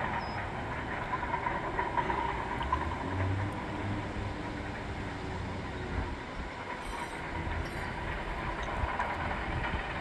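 Bulldozer running as it works, a steady engine rumble with a metallic clatter, a little heavier about three to four seconds in.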